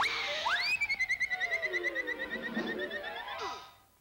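A cartoon soundtrack whistle effect: a high tone slides up, then warbles rapidly as it slowly falls, over a lower descending tone. It dies away shortly before the end.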